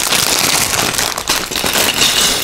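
Plastic bag of Lego pieces being torn open and handled, a dense run of crinkling and crackling.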